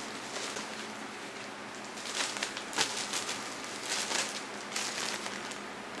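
Clear plastic shrink-wrap crinkling in short bursts as it is peeled off a vinyl LP sleeve, over a faint steady hiss.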